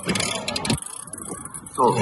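Outdoor background noise with faint, indistinct voices during a lull in a man's talk; a man's voice starts again near the end.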